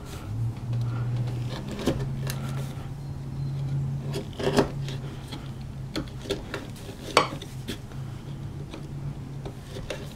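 A narrow steel bevel-edged chisel scraping and clicking in an oak mortise as chips are levered out, with two sharper ticks about halfway through and a bit later. A low steady hum runs underneath from just after the start.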